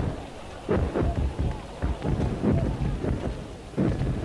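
Battle sound: an irregular run of heavy booms and thuds, about two a second, over a continuous rumble, like gunfire and shell bursts.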